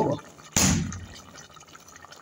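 A sudden rush of noise about half a second in, fading within half a second, then the faint bubbling of fish stew simmering in an aluminium pot.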